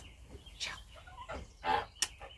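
Domestic geese giving a few short, rough calls, the last one near the end the loudest.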